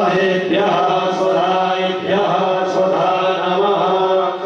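Hindu mantra chanting in long held notes, with a steady low drone underneath.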